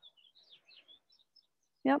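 Faint bird chirping in the background: a few short, high calls through the first second and a half, then quiet.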